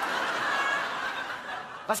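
Audience laughing in a hall after a punchline, a wash of many voices that dies down near the end.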